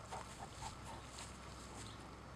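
Faint, short soft sounds from a wet Great Pyrenees dog moving close by over muddy ground, several coming quickly in the first second, over a steady low background hum.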